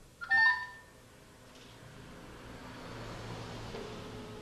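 Smartphone on speaker placing a call: a short burst of electronic tones a fraction of a second in, then line hiss, and near the end a steady low ringing tone begins.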